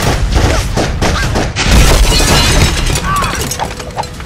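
An action-film fight and shootout mix: a rapid run of bangs and impacts over a deep rumble, with glass shattering and brief shouts.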